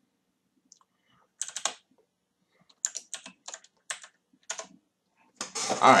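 Typing on a computer keyboard: several short groups of keystroke clicks with pauses between them.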